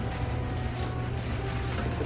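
Dry Rice Krispies cereal rattling as it is shaken out of the box into a measuring cup, over background music.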